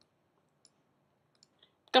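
Near silence broken by three faint computer-mouse clicks, spread over the second half; a man's voice starts speaking right at the end.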